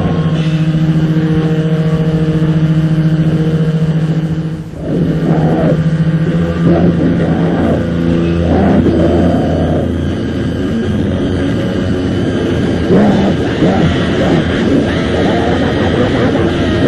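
Lo-fi cassette recording of an extreme metal band with heavily distorted guitar. A single chord is held and droning for about four seconds, drops out briefly, then gives way to a chaotic, noisy stretch of distorted playing with harsh shouted vocal bursts.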